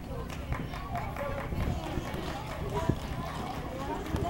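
Gloved punches and kicks landing on Thai pads as scattered sharp thumps, the loudest about three seconds in, under nearby talking.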